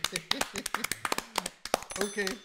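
Three people clapping their hands in quick, uneven applause, with laughing over it.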